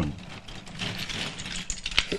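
Pieces of Sabah plantation agarwood being moved by hand, a scatter of small hard clicks and rattling. Buyers judge the wood by this sound, which tells how heavy the wood is.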